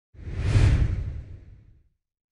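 Whoosh sound effect with a deep low boom under it, as used for a logo reveal. It swells quickly just after the start, peaks about half a second in and fades away over the next second and a bit.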